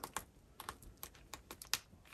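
A string of light, irregular clicks and taps from plastic sheet-protector pages of a small sticker album being handled.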